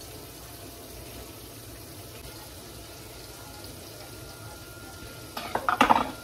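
Floured deer backstrap frying in a skillet, a steady sizzle, with a few sharp knocks near the end.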